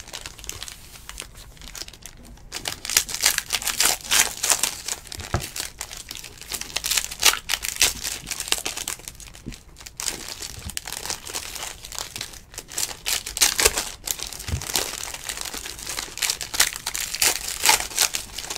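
Foil trading-card pack wrappers being torn open and crumpled by hand, an irregular crackling and crinkling that is lighter for the first couple of seconds and then comes thick and fast.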